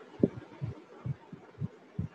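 Soft, irregular low thumps, about five in two seconds, over faint background hiss.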